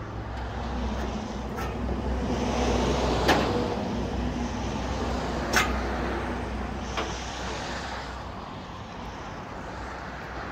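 A vehicle engine running low and steady, easing off over the second half, with four sharp metallic clanks from the car-transporter trailer spaced a second or two apart.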